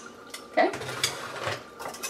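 A metal spoon stirring liquid in a glass measuring cup, clinking quickly against the glass.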